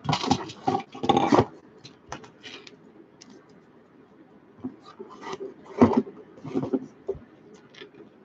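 Hard plastic trading-card holders clicking and scraping against each other as stacks of them are handled and shuffled, with a dense run of clacks in the first second or so and another about six seconds in.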